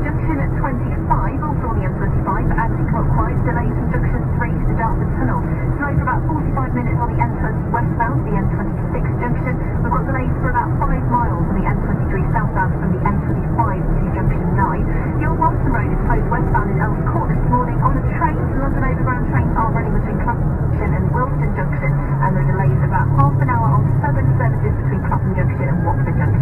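Steady engine and road drone inside a vehicle cab at motorway speed, with muffled talk running under it in which no words come through; the engine note shifts lower about 22 seconds in.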